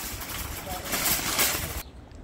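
Metal shopping cart rattling as it is pushed over paving stones, stopping abruptly near the end.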